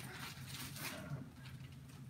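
Faint crinkling of a clear plastic bag as a cardboard box is slid out of it and set down, with irregular soft rustles.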